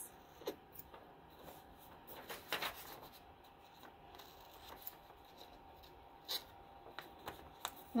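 Scissors snipping paper, trimming a corner round: a few quiet, scattered short snips with light paper handling between them.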